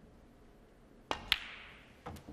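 Snooker shot: the cue tip strikes the cue ball about a second in, then a sharper, brighter click follows a quarter second later as the cue ball hits a red. The click fades away in the hall's reverberation.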